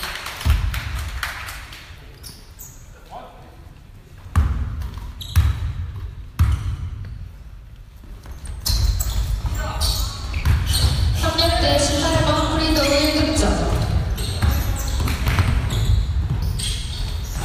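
Basketball bouncing on the court: single thuds, roughly a second apart in the first half. Raised voices on the court take over from about halfway through.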